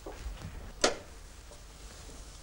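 A single sharp click about a second in, from an oven door being opened to take out a baked cake.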